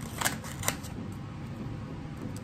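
Two short clicks about half a second apart, from a square of blue tape holding a nail-polished glass stone being handled and lifted off the table.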